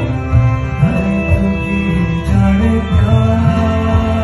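A man singing a song into a microphone, with musical accompaniment.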